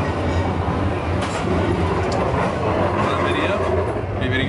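A tram running past on its rails, a steady low rumble.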